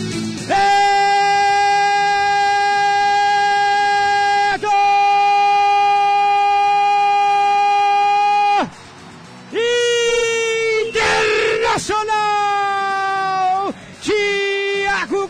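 A radio commentator's drawn-out goal cry of "gol", held on one high pitch for about four seconds, then for about four seconds more after a brief catch. After a short pause come shorter held shouts that rise and fall in pitch.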